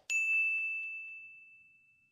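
A single high-pitched ding sound effect: one sharp strike that rings on a steady tone and fades out over about a second and a half.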